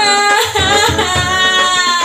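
Background film song: a woman's singing voice glides up into one long held note with a slight waver over instrumental accompaniment.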